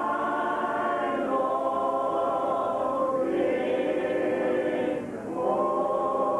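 An unaccompanied adult gospel choir of men and women singing held chords, a cappella with no instruments. The chord shifts every second or two, with a short breath about five seconds in.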